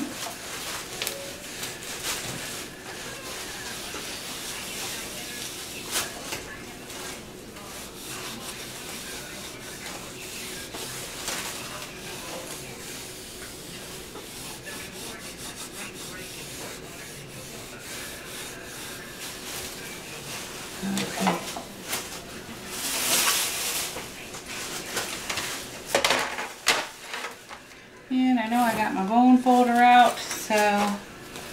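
A wipe rubbing and scrubbing back and forth over a tabletop, cleaning up a spill of craft glue and paint. Near the end come a few louder knocks and clatter as things are moved on the table, then a voice.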